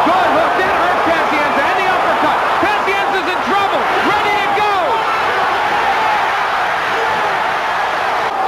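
Boxing arena crowd cheering and yelling, many voices overlapping in a loud, steady wall of sound that swells suddenly at the start as a fighter is driven into the ropes and knocked down.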